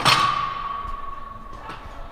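A loaded barbell set down with one sharp metallic clank right at the start, the steel ringing on and fading away over about a second and a half.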